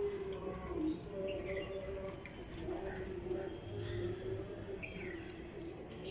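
Domestic pigeons cooing: low, drawn-out coos, one near the start and a longer one through the middle.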